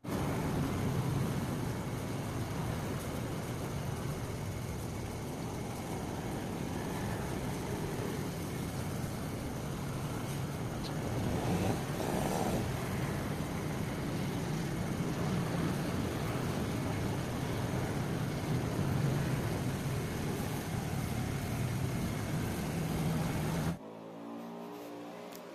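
Steady street traffic noise, a continuous rumble with no single event standing out.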